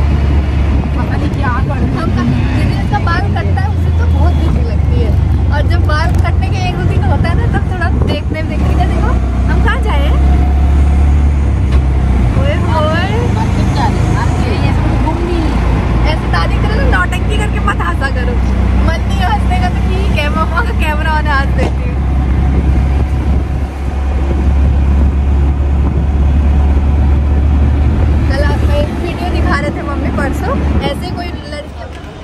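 Steady low rumble of wind on the microphone and the running of a moving auto-rickshaw, heard from inside its open passenger cabin. Voices come and go over it.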